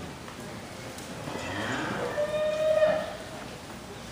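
A heifer moos once: a single long call that starts about a second in and swells to its loudest near the end before it stops.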